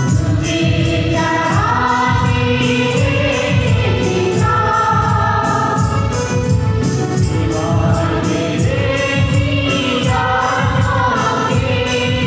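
Choir singing a hymn in a church, with a steady beat under the voices.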